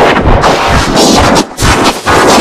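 Loud, heavily distorted and clipped audio from a video-editor effects edit of a logo sound. It is a harsh, dense noise chopped into short pieces by brief dips, the deepest about one and a half seconds in.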